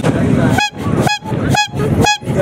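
A small trumpet-style horn fitted to a Royal Enfield motorcycle's handlebar, sounding four short honks in quick succession, about two a second.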